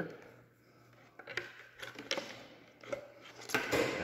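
Plastic clicks and knocks as a new fuel pump and its hoses are pushed by hand into a plastic fuel pump canister. A louder scraping rustle comes near the end.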